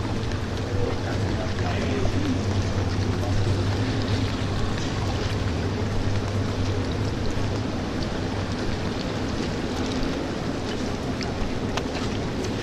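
Indoor swimming pool ambience: a steady low hum under a wash of water noise, with a few light clicks and one sharper click near the end.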